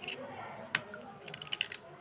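A knife blade scraping a wet slate pencil, giving crackly scrapes and sharp clicks. There is one loud click about a third of the way in and a quick run of clicks in the second half.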